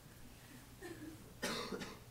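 A single short cough in the audience about one and a half seconds in, over faint room murmur.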